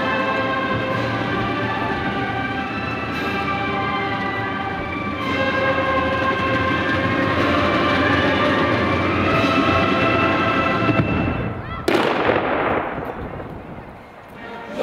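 Band music with long held chords, broken about twelve seconds in by a single rifle volley from an honour guard's salute, one sharp crack that echoes away.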